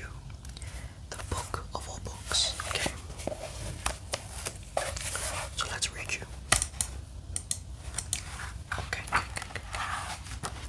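Fingers tapping and scratching on a notebook held close to the microphone, giving a dense run of sharp, crisp taps and clicks; the loudest tap comes about six and a half seconds in.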